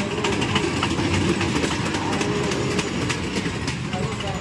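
A children's dragon-shaped mini train ride running round its small circular track, its wheels clacking and rattling over the rail joints.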